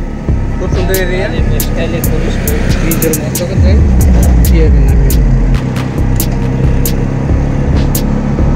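Traffic and road noise heard from a moving vehicle, with wind buffeting the microphone in crackles and a low rumble. The rumble grows louder from about three and a half seconds in to about five and a half. A voice is heard briefly near the start.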